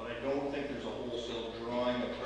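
A man speaking: speech only.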